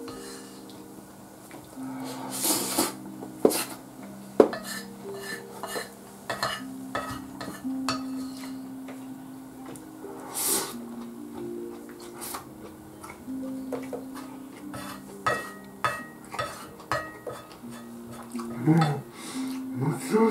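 Wooden spoon scraping and clicking against a plate as rice and eel are scooped up, in scattered sharp knocks. Soft background music of held notes plays throughout.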